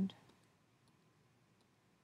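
A few faint, widely spaced computer mouse clicks.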